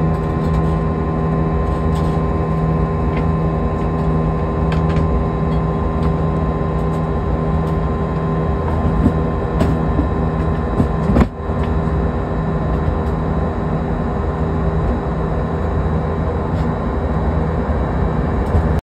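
Airbus A320 passenger cabin in flight shortly after takeoff: a steady drone of engines and airflow, with a low hum and a few steady tones running through it. There are a few faint ticks, and one sharp click comes about eleven seconds in.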